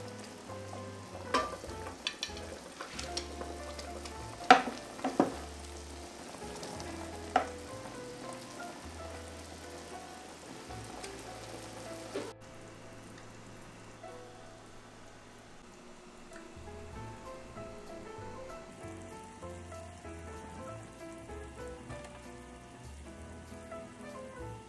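Fish-and-vegetable stew simmering in an electric cooker, with a wooden spatula scraping the pot and several sharp clinks against a china plate as the fish is served. About halfway, the sound drops suddenly to a quieter steady background with faint tones.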